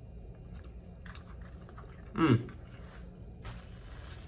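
A man chewing a bite of omelet, with faint wet clicks of his mouth, and a short "hmm" about two seconds in as he tastes it. A soft hiss rises near the end.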